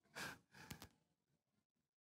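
A short breath drawn by a woman pausing mid-speech, then a few faint clicks, then near silence.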